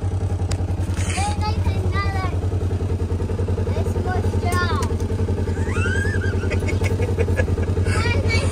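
Side-by-side utility vehicle's engine idling with a steady, even low pulse, its level unchanging.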